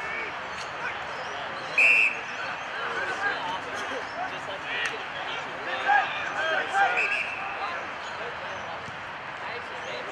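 Players calling and shouting across an Australian rules football ground, with occasional thuds of the ball. A short, loud, high-pitched call or whistle blast sounds about two seconds in.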